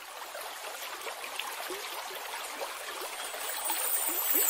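Babbling stream water that fades in from silence and grows steadily louder, with many small gurgles.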